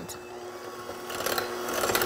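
White electric hand mixer running steadily, its beaters whisking eggs and sugar in a glass bowl; the motor hum grows louder over the second half.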